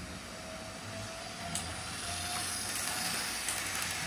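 Model railway trains running on the layout: a steady electric motor whirr and wheel rumble on the track, with a faint whine, growing gradually louder as a train draws near.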